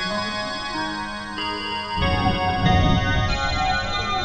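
Ambient music of layered, sustained tones whose chords shift every second or so; about halfway through, a deeper rumbling layer swells in and the music gets louder.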